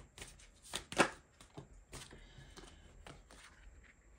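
Tarot cards being shuffled by hand: a quick run of sharp card clicks, the loudest about a second in, thinning out to a few faint clicks and taps in the second half.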